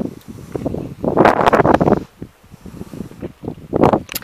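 Wind buffeting the camera microphone in gusts, with a strong gust about a second in.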